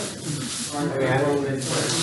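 Thin plastic bags rustling and crinkling as they are handled, louder near the end.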